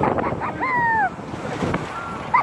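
Wind rushing over a phone microphone as a fairground ride moves, with a rider's rising-then-falling whoop about half a second in.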